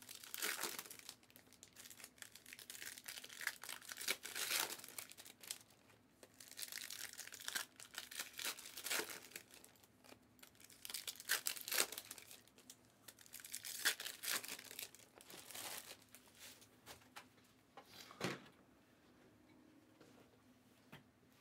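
Foil wrappers of Panini Optic trading card packs being torn open and crinkled by hand, in irregular bursts that stop near the end.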